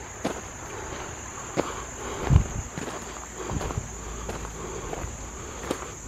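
Footsteps on a gravel path, irregular crunching steps, over a steady high-pitched insect chorus of crickets.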